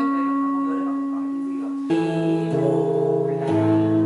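Electric Hawaiian steel guitar notes picked and left to ring: one long sustained note, then about two seconds in new notes sound together, with the lower notes changing twice more before the end.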